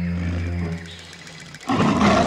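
Dramatic music of held low notes that fades about a second in. Near the end a lion's roar breaks in suddenly and is the loudest sound.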